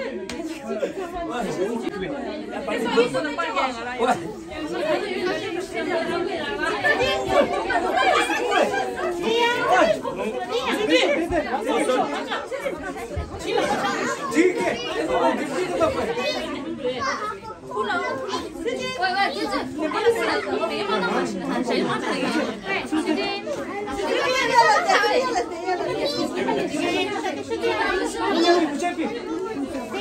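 Overlapping chatter of many voices at once, adults and young children talking over each other in a room.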